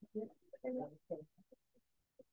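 Faint, choppy snatches of a voice, short broken murmurs that grow sparser and trail off.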